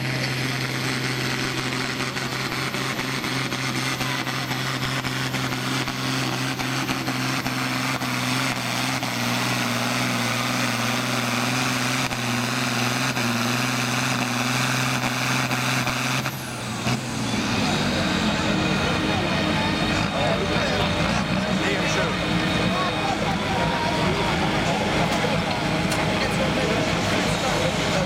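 Steyr 8170 Turbo tractor's turbo diesel engine running hard at steady high revs, pulling a 5.5-tonne sled. About sixteen seconds in, the steady engine note breaks off suddenly as the pull ends. A rougher, unsteady engine sound with voices over it follows.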